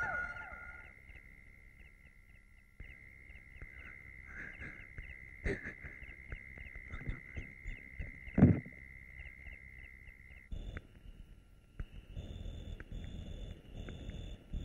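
Night chorus of insects chirping in an even rhythm over a steady high drone, with a sharp click about five seconds in and a louder thump about eight seconds in. Near the end the chirping changes to a different pulsing pattern.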